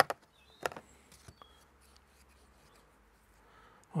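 Freshly sharpened and reassembled bypass secateurs being worked by hand, the blades clicking shut a few times in the first second and a half.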